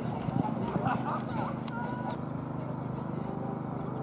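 Ponies' hoofbeats on a sand arena surface during the first half, over background voices and a steady low hum.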